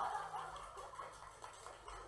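Laughter, loudest at the start and trailing off within the first second.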